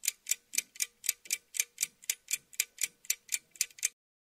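Rapid clock-like ticking sound effect, about four even ticks a second, that cuts off abruptly just before the end.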